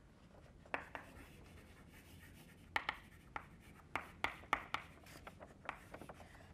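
Chalk writing on a blackboard: faint scrapes and irregular sharp taps of the chalk as words are written, one about a second in and a run of them in the second half.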